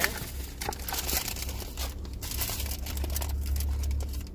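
Paper fast-food packaging (fries carton and wrapper paper) rustling and crinkling in irregular handling noises, over a steady low hum.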